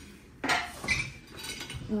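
Ceramic cups clinking as they are handled and set down on a wooden table: two sharp clinks, about half a second and a second and a half in, the first with a short ring.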